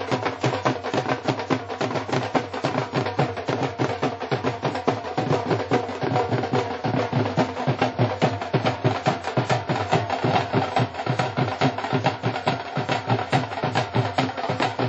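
Drumming with fast, even strokes, about five a second, kept up without a break, over a steady musical tone.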